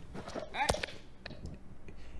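A man's faint shout of "hey" about half a second in, with a few scattered sharp clicks and knocks, one louder about midway.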